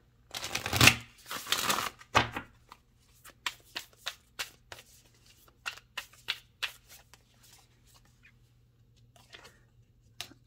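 A Starseed Oracle card deck being shuffled by hand: a dense flurry of card noise in the first two seconds, then a run of short light snaps and taps as the cards are worked through, thinning out near the end.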